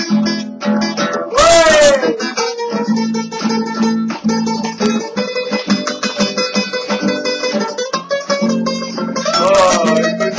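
Two acoustic guitars strumming chords in a steady rhythm. About a second and a half in, and again near the end, a short loud burst falls in pitch over the strumming.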